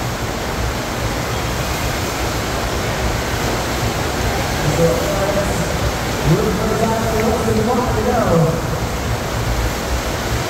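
Steady loud rush of water from a FlowRider double-jet sheet-wave machine, a thin sheet of water pumped at speed up the ride surface. People's voices call out over it, mostly in the second half.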